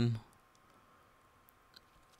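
The end of a spoken word, then near-silent room tone with a few faint computer-mouse clicks, the loudest a little under two seconds in.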